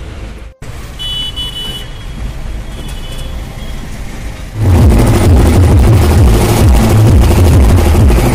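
Vehicle road noise from riding along a road, with a brief high tone twice, like a horn. About halfway through, much louder music with a pulsing heavy beat cuts in and takes over.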